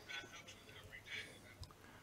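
Very faint male speech in the background, broken into short phrases: the presenter's own voice, turned low beneath the interpretation channel.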